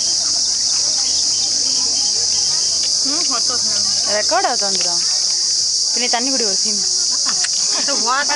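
A steady, loud, high-pitched drone of an insect chorus runs without a break, with brief voices about halfway through and again near the end.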